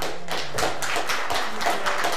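Small audience applauding, with individual hand claps heard distinctly in quick succession.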